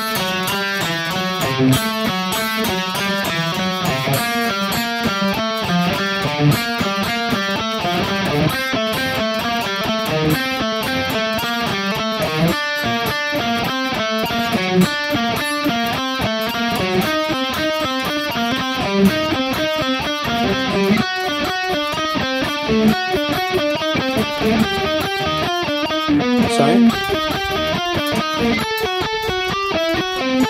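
Electric guitar playing a quick, even stream of single notes, a scale sequence melody played without the open strings between the notes.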